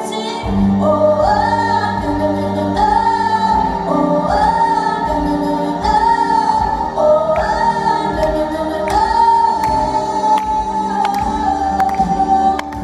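A song with layered, choir-like female vocals holding long notes over a bass line that comes in about half a second in, with light percussion.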